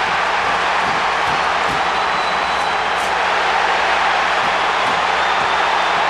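Hockey arena crowd cheering loudly and steadily as two players fight on the ice.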